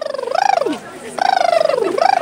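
A person's high, warbling whoop of excitement, the voice fluttering rapidly. Two long cries, each sliding down in pitch.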